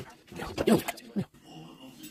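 A sharp knock right at the start, then a short hummed 'mm' sliding up and down in pitch.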